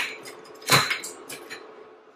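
Eggshells knocked and cracked against each other to break an egg: a sharp click, a louder crack just under a second in, then a few softer taps.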